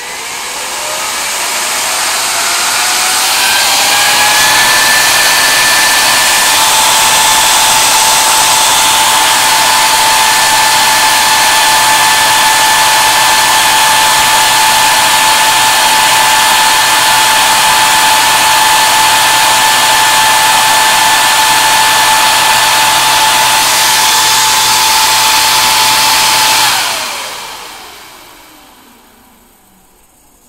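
Large DC cooling fan running from a bench power supply at about 60 V: its whine rises in pitch over the first four seconds or so as it spins up, then holds one steady pitch over a loud rush of air. About 27 seconds in the sound drops and the whine falls away as the fan spins down.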